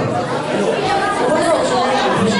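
Many people talking at once in a large hall: a steady hubbub of spectators' voices, adults and children, with no single speaker standing out.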